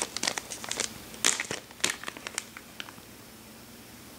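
Clear cellophane bag crinkling in the hands as it is handled and opened, a run of irregular crackles that stops about three seconds in.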